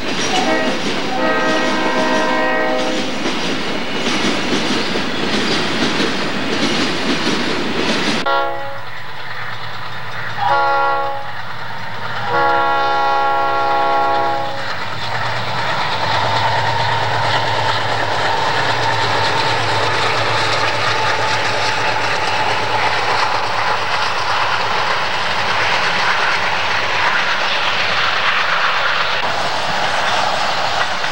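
Freight train rolling past close by with the clatter of its cars, the diesel locomotives' air horn sounding a chord twice in the first three seconds. After a sudden change about eight seconds in, a second train's diesel locomotives hum low as their horn gives a short blast and then a longer one, followed by the steady rumble and rattle of the freight cars going by.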